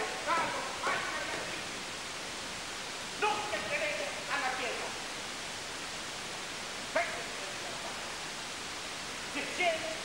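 Low, indistinct speech in short phrases with pauses between them, over a steady recording hiss.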